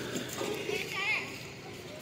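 Faint voices of people talking at a distance over a steady background hubbub of an outdoor crowd; a voice is briefly clearer about a second in.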